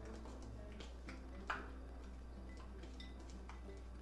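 Soft background music, with faint light taps as crumbled feta is shaken from a tub into a glass jar; one sharper tap about one and a half seconds in.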